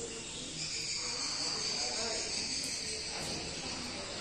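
A high, steady insect trill begins about half a second in and fades out around three seconds, over faint background voices.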